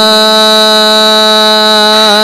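A male singer holding one long, steady note in a Sindhi song, the pitch level and unwavering throughout.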